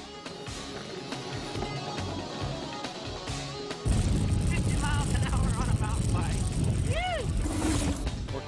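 Loud rushing noise of a fast mountain-bike descent recorded on the bike's on-board camera: wind on the microphone and the rumble of the bike over rough ground, starting suddenly about four seconds in, with music underneath.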